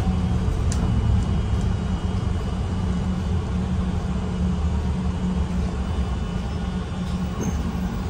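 City bus interior while driving: steady engine and road rumble with a low drone, and a light click or rattle about a second in.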